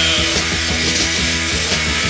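Punk rock recording by a full band: guitars, bass and drums playing together at a steady loud level, with a regular drum beat.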